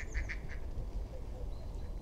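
Waterbirds calling in a quick run of calls, several a second, fading out within the first half second. A faint low background follows.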